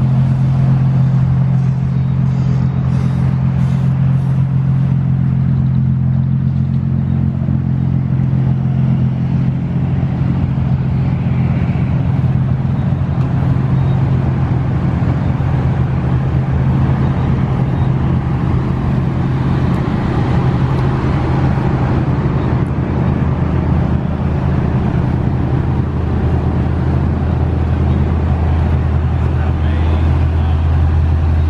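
A car engine idling: a steady, loud, low exhaust drone with no revving.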